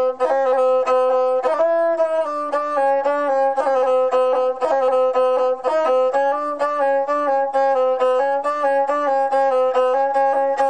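Gusle, the single-string bowed Balkan folk fiddle with a skin-covered body, played solo with a horsehair bow. It plays a melody that steps among a few close notes, with quick ornamental turns.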